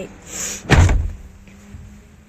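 A car door slammed shut, heard from inside the car: a single heavy thud about three quarters of a second in.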